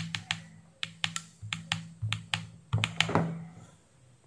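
Plastic push buttons on a Kaiweets KM601 digital multimeter clicking as its function button is pressed over and over to step through the measurement modes, about two clicks a second, stopping about three seconds in.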